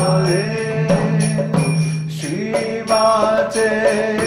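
Devotional kirtan music: a man's voice chanting Sanskrit prayers, accompanied by mridanga drum strokes and held keyboard tones underneath.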